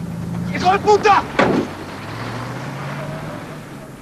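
A vehicle engine running past, its low hum dropping in pitch and fading out near the end, with a brief man's voice and a sharp knock early in the first half.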